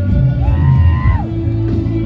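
Live band music at a concert, played loud with a heavy bass. A high note is held a little after half a second in and slides down just after a second.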